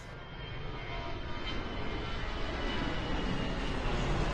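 A steady low rumbling drone that slowly grows louder.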